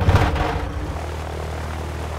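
Light aircraft's piston engine and propeller starting up: a sudden loud burst as it catches, easing after about a second into a steady idle.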